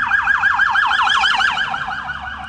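Electronic alarm siren warbling in a fast, even rhythm of about eight falling sweeps a second, easing off near the end.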